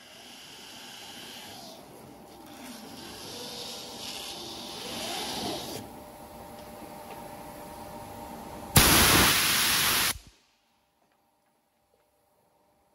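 Low rustling and handling noise, then a loud, steady hiss across all pitches that starts abruptly and stops abruptly after about a second and a half.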